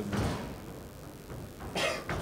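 Gloved MMA strikes landing: a dull thud just after the start and a sharper, louder smack near the end.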